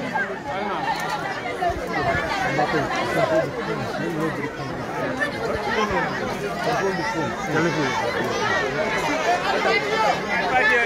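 Many voices talking and calling out at once, a steady crowd chatter in which no single speaker stands out.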